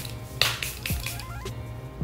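A pump-action setting spray bottle misting onto the face in two short hisses, over soft background music.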